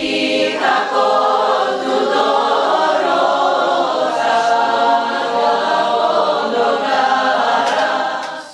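A group of voices singing a cappella in harmony, holding long notes together.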